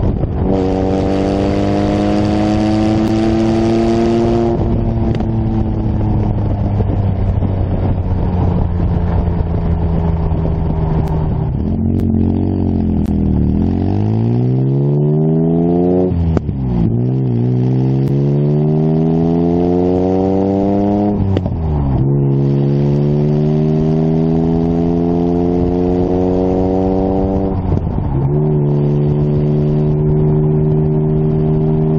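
Sports car engine and side-exit exhaust pulling up through the gears. The engine note climbs, then drops sharply at each change, about four times. In between it holds a steady cruising note for several seconds, and there is a burst of wind hiss in the first few seconds.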